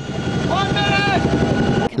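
Helicopter rotor and engine noise running steadily, with a brief raised voice, like a shout, from about half a second in to just past one second.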